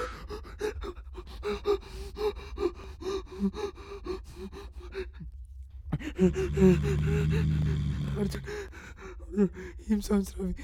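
A frightened person panting and gasping in quick, short voiced breaths, about three a second, over a low steady hum. The breathing stops for about a second halfway, then comes back with a longer drawn-out moan.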